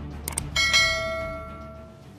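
Subscribe-button notification sound effect: a couple of quick clicks, then a single bell chime that rings out and fades over about a second and a half.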